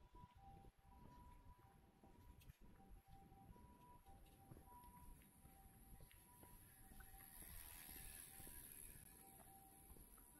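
Near silence: faint outdoor street ambience with a low rumble, and a faint high hiss that swells and fades about three-quarters of the way in.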